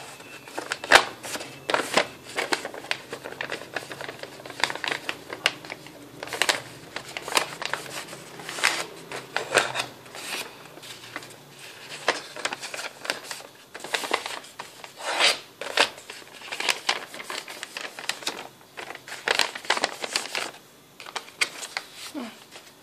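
Sheet of printed paper rustling and crinkling as hands fold and crease it into a gift bag, in irregular crackles of varying loudness.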